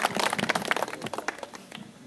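Applause from a small seated crowd, the claps thinning out and dying away near the end.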